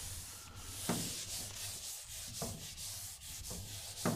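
Handheld whiteboard eraser wiping a whiteboard in repeated back-and-forth strokes, a dry hissing rub.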